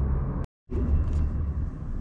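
Steady low background rumble with no distinct event, broken by a brief gap of dead silence about half a second in where two recordings are joined.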